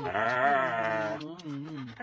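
Husky yowling in protest: one long wavering cry that rises and falls, then a shorter one.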